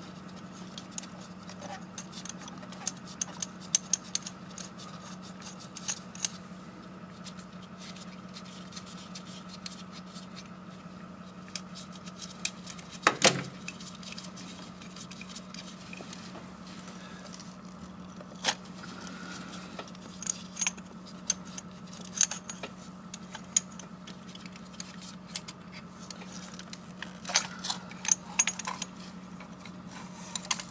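Scattered metallic clicks and clinks as the threaded nuts and caps of a fuel-injector puller tool are turned and loosened by hand on the engine, the loudest clatter about 13 seconds in and another run near the end. A steady low hum lies underneath.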